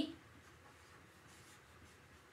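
Felt-tip marker writing on chart paper: a faint, steady scratching.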